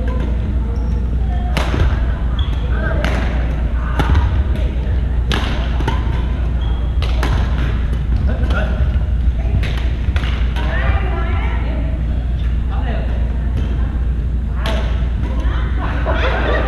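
Badminton rally on a hardwood gym court: sharp smacks of rackets hitting the shuttlecock about a second apart, with short squeaks of sneakers on the floor. Chatter from other courts and a steady low hum fill the large room.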